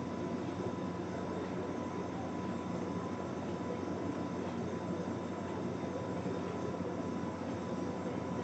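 Steady background hum and hiss of the room with a faint constant high tone, unchanging throughout; no distinct handling sounds stand out.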